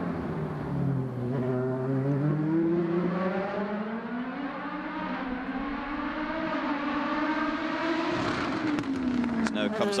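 An LMP2 prototype's Gibson V8 engine running at speed on track, its pitch climbing steadily through the revs and then dropping away about eight seconds in.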